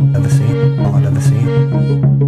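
Music with a violin bowing pitched lines over a steady low sustained note.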